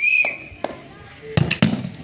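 A referee's whistle gives one short, steady blast signalling the penalty kick. About a second and a half later come a few dull knocks as the kicker runs up and strikes the football.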